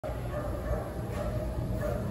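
A dog whining faintly and thinly, on and off, over a steady low rumble.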